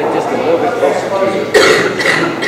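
A man speaking over a microphone, then a single loud cough about one and a half seconds in.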